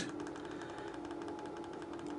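Faint steady background hum with a low steady tone and fine rapid ticking.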